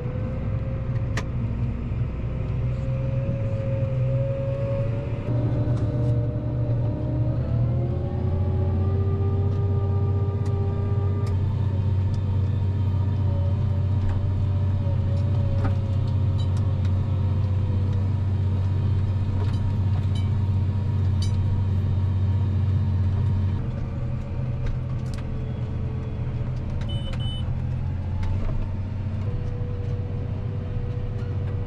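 Tractor engine heard from inside the cab, running steadily under load while towing a John Deere 2680H high-speed disk through pasture sod. The drone climbs in pitch and grows louder about eight seconds in as the pace picks up, holds there, and eases back a little about twenty-three seconds in.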